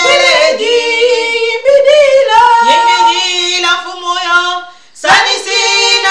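Two women singing a worship song together, holding long notes in overlapping voice lines; the singing breaks off briefly just before five seconds in, then starts again.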